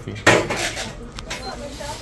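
A sudden knock and clatter about a quarter second in, then a few lighter clicks, like objects being handled, with faint talk behind.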